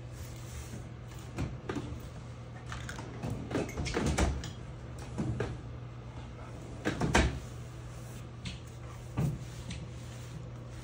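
Irregular knocks and clatter from hands handling hardware and parts bags on a wooden workbench. The loudest thumps come about four and seven seconds in, all over a steady low hum.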